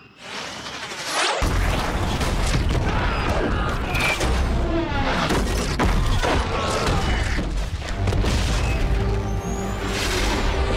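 Film action soundtrack: a jet sweeps in, then about a second and a half in a run of explosions starts, with deep rumbling booms and crashing debris over dramatic score music.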